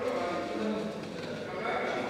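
A man's voice speaking in Burmese through the chamber's microphone system, with drawn-out syllables.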